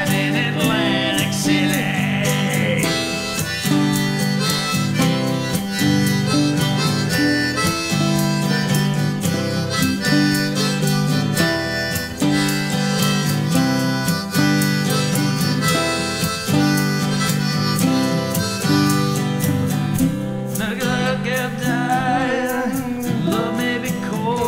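Harmonica solo played over steady strummed acoustic guitar in a country-style song. Singing comes back in near the end.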